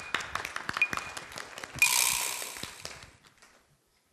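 Audience clapping after a correct answer: scattered claps that swell into a brief louder burst of applause about two seconds in, then die away.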